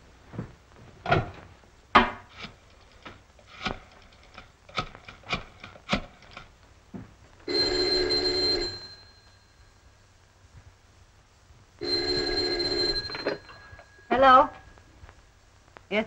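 A 1930s desk telephone being dialed, a run of sharp, irregular clicks over the first six seconds or so, followed by an electric telephone bell ringing twice, each ring about a second and a half long, with a pause of about three seconds between them.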